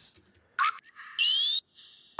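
Electronic dubstep-style synth hits played back from a music production session: a short hit about half a second in, then a louder half-second one about a second in, each sweeping upward in pitch over a hiss of noise, with a faint steady tone between them. The upward sweep comes from automated frequency shifting on the synth.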